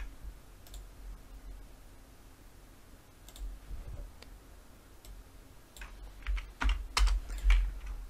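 Computer keyboard and mouse clicks, scattered at first and then a quick run of sharper clicks near the end, over a faint low hum.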